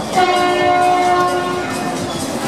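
A bumper-car ride's signal horn sounds one steady note, starting abruptly and lasting about a second and a half.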